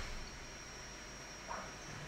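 Faint steady background hiss of the recording room, with a thin steady high-pitched tone running through it and one soft, brief sound about one and a half seconds in.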